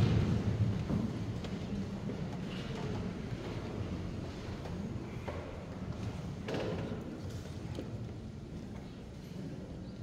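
Echoing church room noise from a congregation as people take their seats: a low steady rumble with scattered soft knocks and shuffles, one a little louder about six and a half seconds in.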